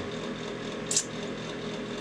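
Steady background hum of a small room, with one brief soft hiss about halfway through.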